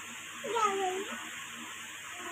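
A young child's short whiny vocal sound, a single drawn-out call lasting about half a second, starting about half a second in.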